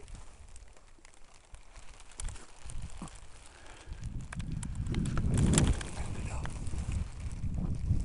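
Faint rustling and a few clicks, then from about halfway an uneven low rumble of wind buffeting the microphone.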